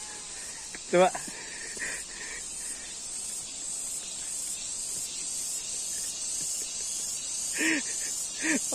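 A steady, high-pitched insect drone from the surrounding vegetation, one short spoken word about a second in and another brief voice near the end.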